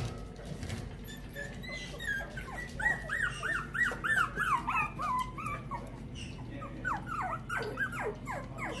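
Young puppies whimpering: a run of short, high squeals at about two or three a second from about two seconds in, then more again near the end.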